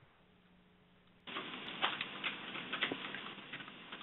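Faint hiss of an open conference-call audio line with a low hum, growing louder about a second in, with scattered faint clicks.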